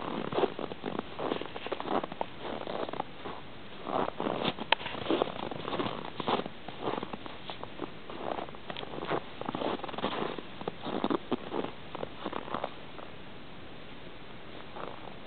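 Footsteps crunching in snow, in irregular runs of short bursts with brief pauses, as someone walks slowly beside a rabbit on a leash.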